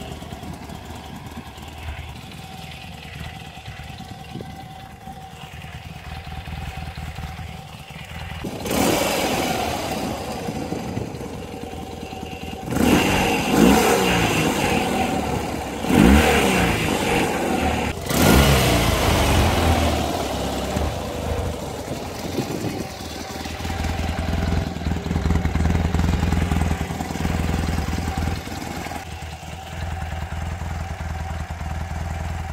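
BMW R80 G/S Paris-Dakar's 797 cc air-cooled boxer twin idling, then revved with several throttle blips, each a quick rise and fall in pitch, before it settles back to a low idle.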